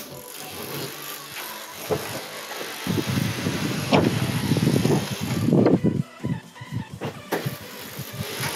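Rumbling handling noise on the microphone with a few sharp knocks as someone climbs out of a parked car, loudest around the middle.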